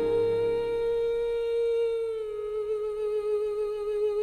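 Slow pop song music with no lyrics: one long held melodic note, hummed or played, that steps slightly down in pitch about halfway through, while the bass underneath drops out.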